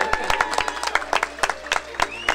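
A crowd applauding, with individual hand claps standing out sharply.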